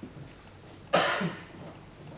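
A person coughing once, short and loud, about a second in.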